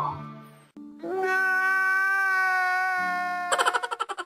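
A man crying out loud: one long, high, held wail of about two and a half seconds, breaking near the end into rapid sobbing gasps. A quiet music bed fades out in the first half-second.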